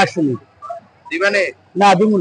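Men's voices: short bursts of speech with brief pauses between them.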